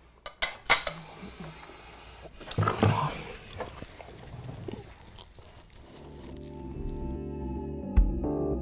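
Knives and forks clinking and scraping on dinner plates, with two sharp clinks in the first second and a short vocal sound about three seconds in. Music fades in near the end.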